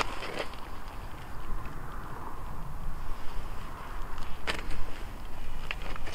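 Wind rumbling on the microphone across open lake ice, with a few sharp knocks.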